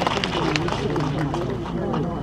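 People's voices talking over one another, with no single clear speaker.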